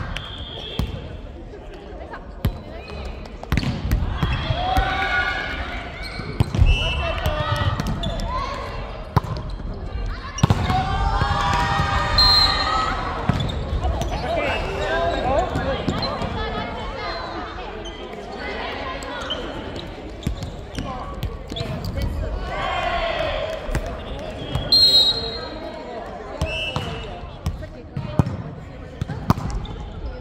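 Volleyball being played in a large, echoing gymnasium: players' voices calling out at intervals, mixed with repeated thumps of the ball being hit and bounced on the wooden floor.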